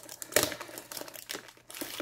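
Plastic shrink wrap on a hockey-card blaster box crinkling as it is picked at and pulled open, with a sharp crackle about a third of a second in; the wrap is tough to open.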